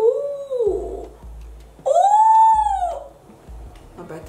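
A woman's voice giving two drawn-out 'oooh' sounds that rise and then fall in pitch: a short one at the start and a longer, higher one about two seconds in.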